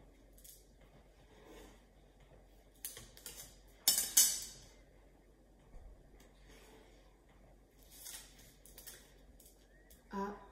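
A metal ruler being lifted, moved and set down on paper on a table, making light clicks and knocks. A short cluster of clatter about four seconds in is the loudest, and softer taps come near three seconds and again around eight to nine seconds.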